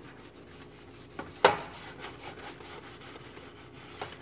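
Sponge scrubbing a metal stove drip pan wet with oven cleaner, a run of short rubbing scrapes loosening baked-on grime, with one sharp knock about one and a half seconds in.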